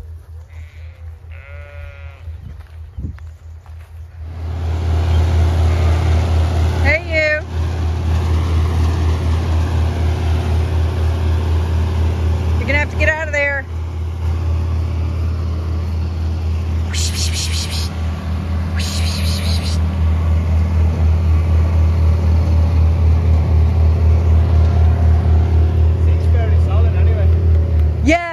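A motor vehicle's engine idling steadily, starting about four seconds in and growing louder toward the end, with a few sheep bleats over it.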